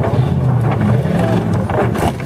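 Lifted Jeep Grand Cherokee's engine running steadily under load as its oversized tyres climb onto a wrecked car, with a short crunch of the car's body near the end.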